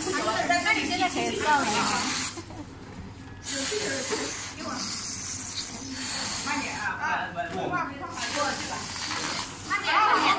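A group of people chatting over one another, with a high hiss under the voices that drops out twice.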